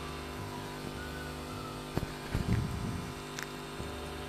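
Steady low background hum, with a single sharp click about two seconds in.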